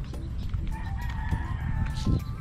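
A rooster crowing: one long, drawn-out call that starts about two-thirds of a second in and holds until near the end, over a low steady rumble.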